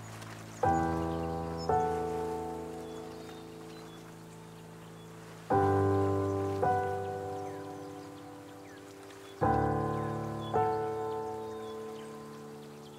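Solo piano played slowly: chords struck in pairs about a second apart, three pairs in all, each chord left to ring and fade away.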